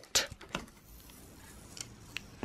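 A clear plastic card holder and its green wrapping handled and picked at by hand: a few light clicks and rustles in the first half second, then a faint tick or two near the end.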